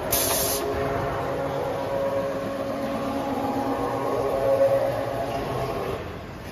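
A short hiss of compressed air at the start, then the tube laser cutter's chuck carriage traversing on its servo drive: a steady multi-tone mechanical whine that swells a little near the end and stops at about six seconds.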